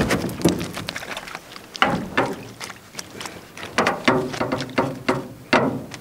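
A hooked rainbow trout being landed in a small aluminum boat: a run of irregular knocks and splashes.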